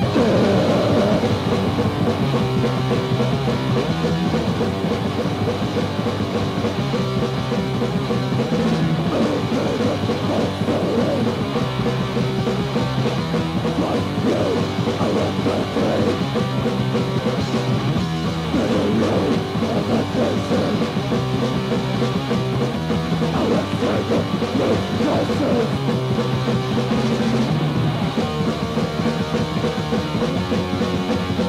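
Fast, loud punk rock record: distorted electric guitars and bass play shifting chord riffs over a pounding drum kit, with the full band crashing in at the very start.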